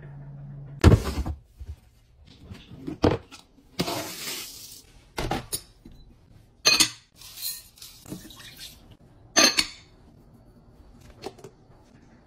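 A series of kitchen handling knocks and clinks: glass bowls and dishes being set down and stacked on a countertop kitchen scale. There are about five sharp knocks spaced a second or two apart, with brief rustling and sliding between them. A low hum stops at the first knock.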